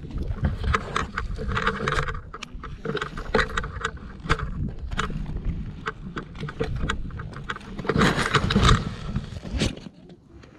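Wind rushing over an action camera's microphone during a tandem paraglider's flight, with frequent knocks and rattles from the camera pole and harness. A louder burst of rushing and bumping comes about eight seconds in, as the glider touches down and the camera ends up on the ground among the lines.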